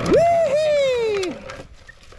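A single long, high-pitched wordless cheer from a person's voice, about a second and a half long, rising sharply at first and then sliding steadily down in pitch before it stops.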